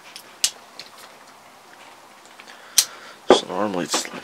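A few sharp metallic clicks, the loudest about three seconds in, as a battery-charger lead's alligator clip is handled and clamped onto a starter relay's terminal.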